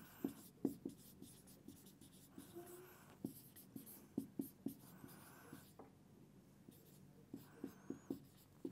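Marker pen writing on a whiteboard: faint, short scratchy strokes and small taps as letters are written.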